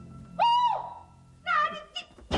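A woman's short, high-pitched cry that rises and falls, as she is shoved out of a doorway, followed near the end by a brief burst of agitated speech.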